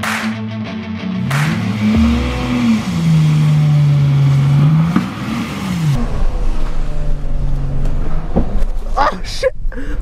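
Background music, then a vehicle engine revving: its pitch rises, holds, then falls and rises again, before it settles into a low running rumble.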